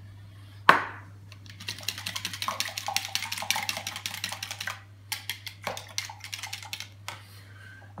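A spoon stirring egg-and-milk sauce in a plastic measuring jug, clicking rapidly against the jug's sides for about three seconds, then more slowly and unevenly. A single sharp knock comes just under a second in.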